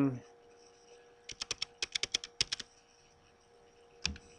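Typing on a computer keyboard: a quick run of about a dozen keystrokes lasting just over a second, starting about a second in, over a faint steady hum.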